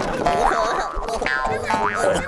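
Cartoon sound effects for a tumbling brawl: springy boings and quick rising whistle-like glides, over lively background music.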